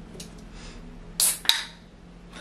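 Aluminium beer can being opened by its ring-pull: a short hiss of escaping gas, then a sharp click about a second and a half in.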